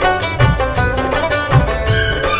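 Instrumental passage of a Bhojpuri film song: plucked strings playing a melody over a steady drum beat.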